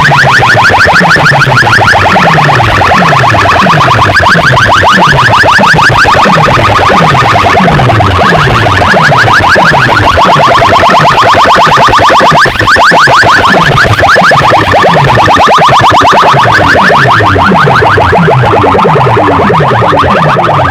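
A bank of horn loudspeakers blasting an electronic test-tone effect at full volume, overloading the recording: a falling bass sweep repeats about one and a half times a second under a rapid high chirping warble. There is a brief dip about twelve seconds in.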